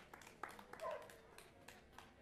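Sparse, scattered hand claps from a small audience, faint, with one brief call a little under a second in.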